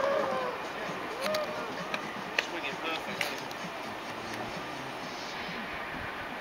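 A person's voice trailing off at the start, then a steady rush of wind noise on the camera microphone with a few light clicks, as the jumper hangs on the bungy cord high above the canyon.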